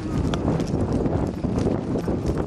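Hoofbeats of a horse being ridden through grass, under a steady low rumble of wind on the microphone.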